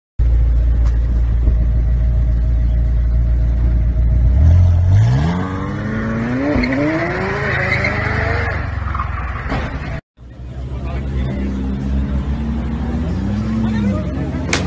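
A sports car's engine idling low, then accelerating hard away with its pitch climbing steadily for several seconds, with tyre noise over the top. After an abrupt cut, another supercar engine runs at a steady idle with a short rise in revs near the end.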